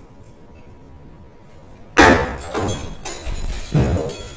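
A sudden loud crash about two seconds in, with clattering after it and a second heavy thump near the end.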